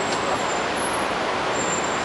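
Steady city street traffic noise, an even background with no distinct events.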